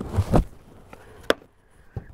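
A cast concrete stepping stone drops out of its plastic mould onto a wooden table, making two dull thumps near the start. A single sharp knock follows a little over a second in.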